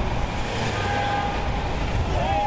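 City street traffic: cars and taxis passing with a steady engine and tyre rumble.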